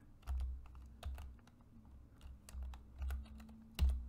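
Computer keyboard typing: a run of separate, irregular keystrokes, with one louder click near the end.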